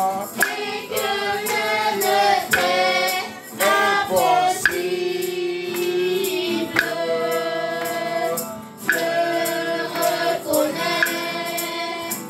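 A group of voices singing a gospel worship song together, with some long held notes.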